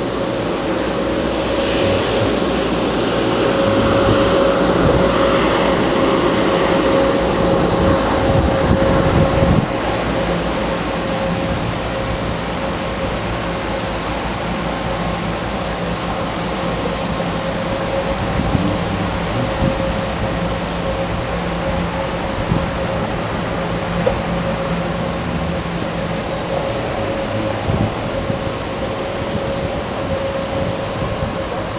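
Steady rushing noise of wind on a handlebar-mounted camera's microphone and bicycle tyres rolling on asphalt while riding, with a steady high hum throughout and a few small knocks from the bike later on.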